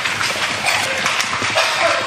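Many people stamping their feet on a hard floor at once, a dense, continuous patter of footfalls.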